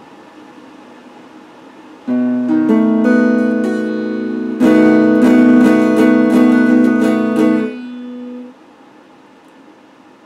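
Electric guitar: after faint ringing, a chord is struck about two seconds in and more notes join it, then from about halfway a run of quick repeated strums. It stops abruptly near the three-quarter mark, with one note ringing on briefly before it fades.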